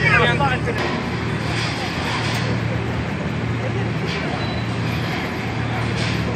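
A Toyota SUV's engine runs at low speed with a steady low hum as it crawls along an off-road demonstration course. Voices are heard over it, briefly clear at the start.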